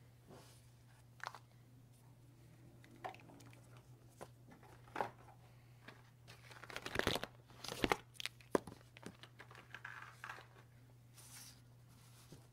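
Paper and stationery handled on a desk: paper rustling and sliding, with scattered light clicks and taps as markers are picked up and put down, busiest about seven to nine seconds in.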